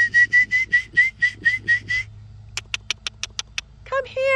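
A person calling a horse with mouth noises: about ten quick squeaky whistle-like chirps at one steady pitch over two seconds, then a run of about nine sharp tongue clicks.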